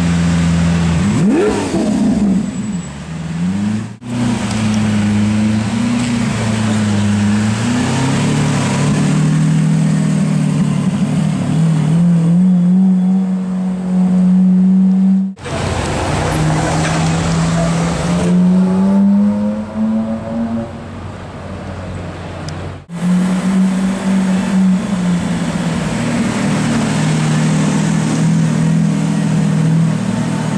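Supercar engines in slow street traffic over several cut-together clips, among them a Lamborghini Aventador's V12 and a Ferrari 458 Italia's V8, running with a deep steady note that rises in pitch as a car pulls away. The sound breaks off abruptly at cuts about 4, 15 and 23 seconds in.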